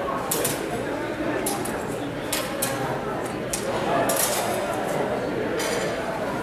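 Steady murmur of voices in a large hall. Over it come scattered short, sharp metallic clinks, several per second at times, from sword blades meeting in fencing bouts.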